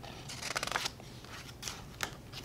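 Paper rustling as a page of a hardcover picture book is turned: a quick run of crisp rustles about half a second in, then a shorter rustle near the end.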